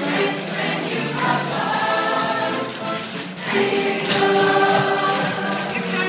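A stage cast singing together in chorus with musical accompaniment, swelling into a long held chord about three and a half seconds in.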